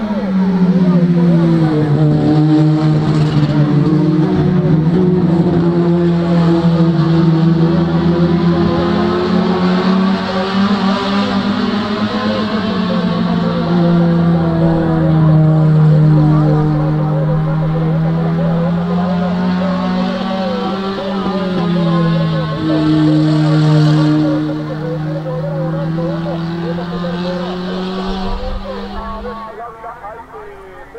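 Race car engines running hard at high revs, their note held steady for long stretches and dipping and rising several times as the cars shift and take corners. The sound drops away near the end.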